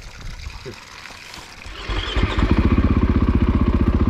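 A KTM enduro dirt bike's engine comes in about halfway through and runs at a steady, evenly pulsing idle.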